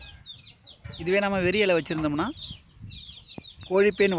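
Chickens calling: two drawn-out, pitched calls, one about a second in and another near the end, with short, high, falling chirps in the quieter gaps.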